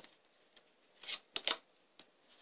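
A tarot deck being shuffled by hand: a few short, soft flicks of the cards against each other, mostly about a second to a second and a half in.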